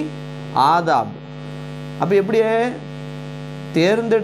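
Steady electrical mains hum with a buzzy stack of overtones. A man's voice cuts in twice with short drawn-out sounds, about half a second in and again around two seconds in.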